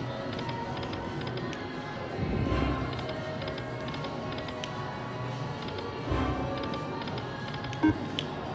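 Buffalo Gold slot machine playing its reel-spin music and sound effects, with small clicks as the reels stop. A louder swell comes about two seconds in and again about six seconds in, as the next spins begin.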